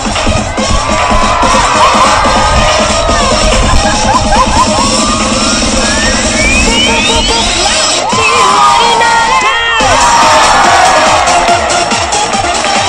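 Dance music played over loudspeakers while a large crowd cheers and screams. A rising sweep builds through the middle and breaks off just before ten seconds, with a burst of screams around the break.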